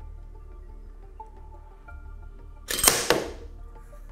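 Soft background music. About three seconds in, a short, loud crash of a glass jar breaking as the over-heavy cube breaks through it.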